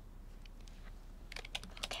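Typing on a laptop keyboard: a few scattered key clicks, then quick, continuous keystrokes starting a little over a second in.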